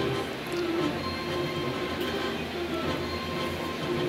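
Orchestral film-score end-credits music with held chords over a low drone, playing from a television's speakers and picked up across the room.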